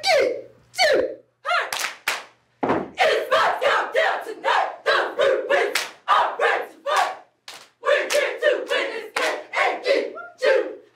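Cheerleading squad shouting a chant in unison, short sharp shouts about two to three a second, with stomps and claps marking the beat and a brief break about three-quarters of the way through.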